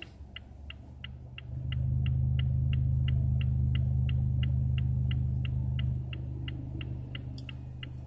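A car's turn-signal indicator ticking steadily, about three clicks a second. Under it runs a low drone that swells about a second and a half in and eases off about six seconds in.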